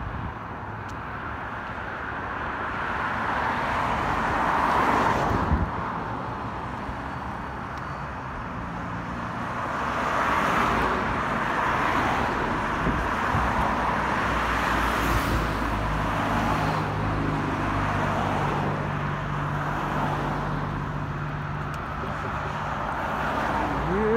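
Road traffic: cars passing one after another on a busy street, the tyre and engine noise swelling and fading as each goes by, with a low steady engine hum in the second half.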